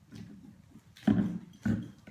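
Plastic bottles of body oil clunking as they are picked up and handled: a soft knock, then two loud hollow knocks about half a second apart.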